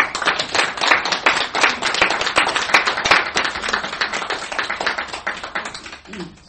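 Audience applauding: many hands clapping at once, starting suddenly and tapering off near the end.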